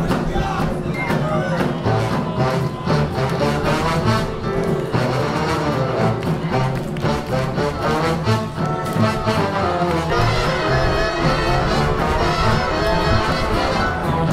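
Live swing big band playing, with a horn section of saxophones, trumpets and trombones over a drum kit.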